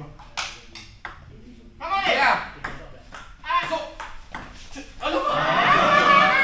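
Table tennis ball clicking back and forth in a doubles rally: paddle hits and table bounces, a fraction of a second apart. Loud voices break out near the end.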